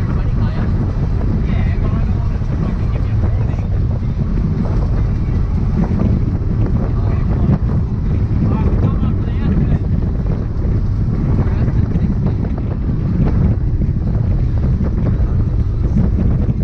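Inside the cabin of a Mazda NA MX-5 driving at road speed: a steady low drone of the four-cylinder engine mixed with road and wind noise.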